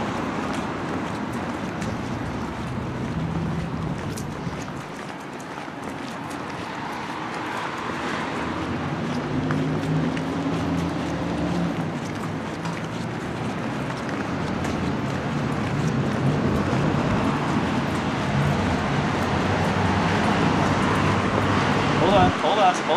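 Street traffic: cars driving past in a steady rush of noise, with low engine hum that swells and fades as vehicles go by.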